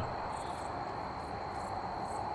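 Crickets chirping steadily: a constant high trill with fainter pulsing above it, over a low hiss.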